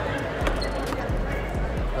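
A few dull thumps, a few tenths of a second apart, from about half a second in, as a mini basketball hoop set and its small ball are picked up and handled. Background music plays underneath.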